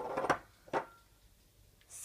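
Two short knocks, the first sharper, about a third of a second and three-quarters of a second in, from handling a jar of Nutella with a spoon in it. Otherwise low room tone.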